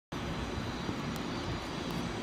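Distant steady rumble of a Hawker 800XP business jet's twin turbofan engines, heard under a low, unsteady noise.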